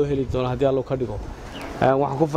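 A man speaking Somali into press microphones.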